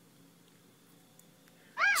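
Faint room tone, then near the end a brief high-pitched call that rises and falls once.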